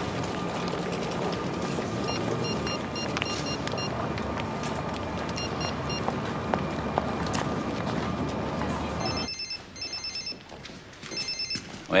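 Electronic phone ringtone: short groups of high trilling beeps over a steady background din. After a sudden drop in the background, the ringtone comes in two rapid trilling bursts near the end, just before the call is answered.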